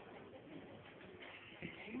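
Faint cooing of a pigeon in a quiet pause; a man's declaiming voice comes in at the very end.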